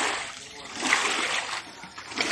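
Standing rainwater pushed across a flat concrete roof slab with a long-handled squeegee. Two swishing, splashing strokes: one at the start and a louder one about a second in.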